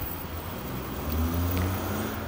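Low rumble of background noise with no speech, swelling a little from about a second in.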